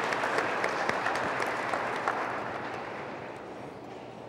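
Audience applauding, the clapping dying away over the last two seconds.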